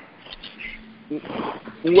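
A man's voice over a radio interview line: faint for the first second, then a brief stretch of rough noise before speech comes back loudly near the end.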